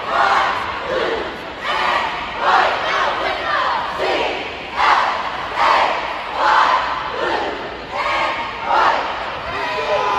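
Cheerleading squad shouting a cheer in unison: loud group shouts, roughly one a second, in a steady chant rhythm.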